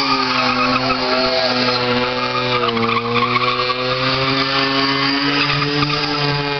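A car engine held at high revs during a burnout, its tyres spinning and screeching against the pad. The revs sag briefly about halfway through and then climb back up.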